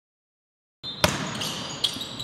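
Silence for the first part of a second, then a basketball bouncing on a hardwood gym floor amid players moving on the court: one sharp bounce about a second in and another near the end.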